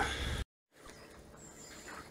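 Outdoor background noise that cuts off abruptly at an edit, a brief dead gap of silence, then faint steady background noise.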